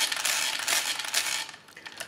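Hamann Manus E mechanical calculator's hand crank being turned, its gears and register wheels running with a dense metallic rattle that stops after about a second and a half.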